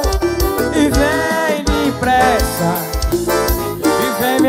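Live forró band music: an electronic keyboard playing the melody over a steady low drum beat, with a held vocal line.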